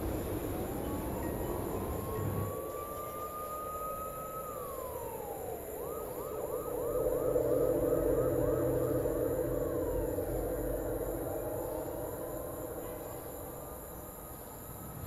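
Emergency-vehicle siren. It wails slowly up and down, then switches to a fast yelping warble of about three sweeps a second for a few seconds, then returns to a slow rising wail.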